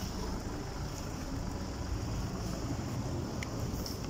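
Steady low rumble of wind buffeting a phone's microphone outdoors, with a faint hiss above it.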